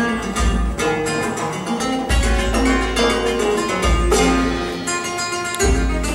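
Flamenco acoustic guitar played live, quick plucked note runs and strummed chords, with hand-drum accompaniment that adds deep low beats every second or two.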